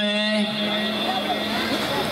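A man's voice at a microphone drawing out the end of a word for about half a second, then breaking off into steady, noisy background sound.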